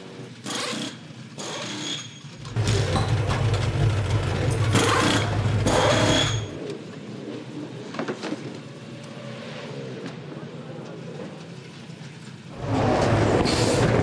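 Pit-stop work on a V8 Supercar: pneumatic wheel guns firing in short whining bursts, with race-car engine noise loud in two stretches, the second starting near the end.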